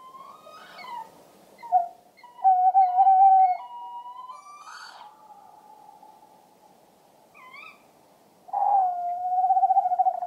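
Male tawny owl song: a long hoot about two and a half seconds in, then after a pause a long wavering hoot near the end, with a brief higher call just before it.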